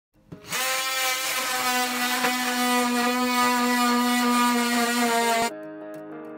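Handheld power tool running steadily at one pitch, with slight changes as it works. It cuts off sharply about five and a half seconds in, and guitar music starts.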